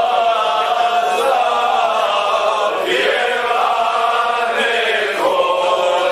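Men singing a slow Serbian folk song to the gusle, drawing out long, wavering notes, with fresh phrases beginning about three and five seconds in.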